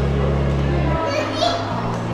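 Background music with steady bass notes that change about once a second, and a toddler's voice heard briefly about a second in.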